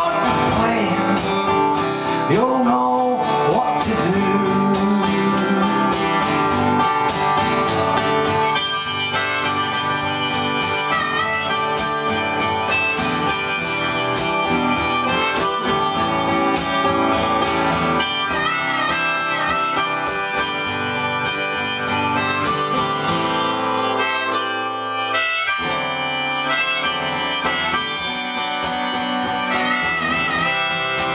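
Harmonica solo, played from a neck rack over a strummed steel-string acoustic guitar, with held and bent notes in an instrumental break between verses.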